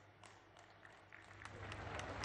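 Near silence, then faint applause from an audience starting a little past halfway and growing steadily louder.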